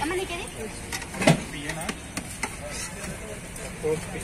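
Clinks and knocks of serving spoons on steel food pots, the sharpest just over a second in, with a few lighter clicks after it. Voices chatter in the background over a steady low traffic hum.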